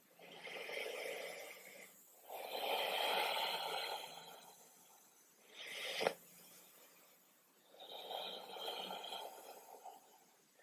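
A woman breathing slowly and deeply in and out, close to a clip-on microphone: four long, soft breaths, with a brief click about six seconds in.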